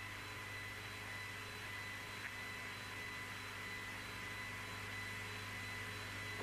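Steady hiss with a low electrical hum and faint steady whistle tones: the background noise of an old broadcast audio line between announcements.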